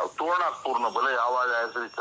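Speech: a man talking in a recorded telephone call.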